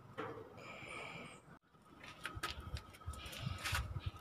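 A bird calling once: a high, steady note about a second long. Scattered faint clicks and knocks follow.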